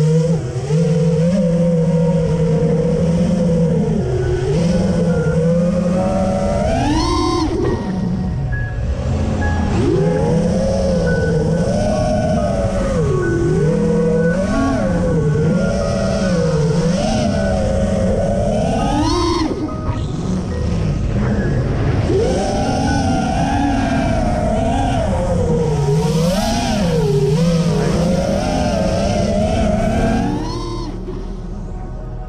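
FPV racing quadcopter's brushless motors and propellers whining, the pitch constantly rising and falling as the throttle is worked through turns and climbs, with sharp climbs to a high whine about 7 and 19 seconds in and again near the end.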